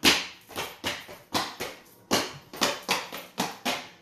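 A line dancer's quick steps through the seven-count jump, left-right-left and on, done twice: about fourteen sharp taps at roughly four a second.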